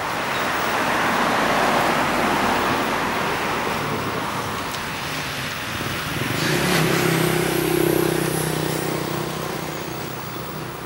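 Road traffic passing: a rush of vehicle noise swells and fades over the first few seconds. Then, about halfway through, a second vehicle's steady engine hum rises and dies away.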